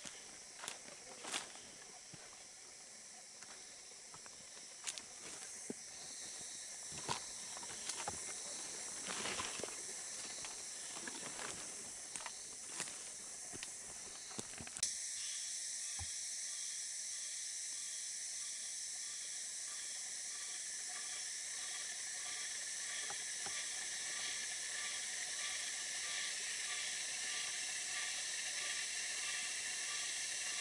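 Footsteps and rustling through forest undergrowth with scattered sharp snaps, then, about halfway through, a steady high-pitched drone of tropical forest insects comes in suddenly and holds, with a faint evenly pulsing call beneath it.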